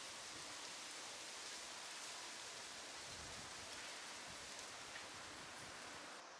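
Faint, steady rustle of tree leaves in a light breeze, with a low wind rumble on the microphone about three seconds in.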